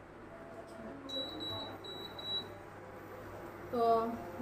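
An electronic appliance beeping: a quick run of about four short, high-pitched beeps about a second in, over faint background voices.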